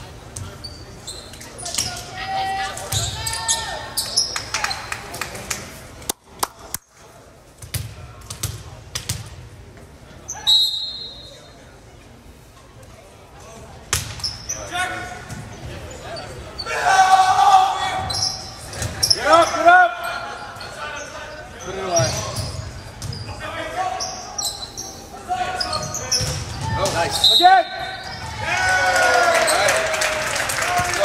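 Indoor volleyball rally in a reverberant gym: a short referee's whistle, then the ball struck in sharp smacks, with players and spectators shouting more and more from about halfway through. A second short whistle comes near the end as the point is won.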